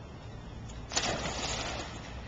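A small child jumping into a swimming pool: one sudden splash about a second in, followed by about a second of churning water.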